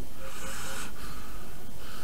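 A person's breathing during a pause in the dialogue: two soft breaths, one near the start and one near the end, over a steady background hiss.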